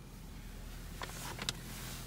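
2020 Honda Civic Sport's 2.0-litre four-cylinder engine idling, a faint steady low hum heard from inside the cabin, with a couple of light clicks about a second and a second and a half in.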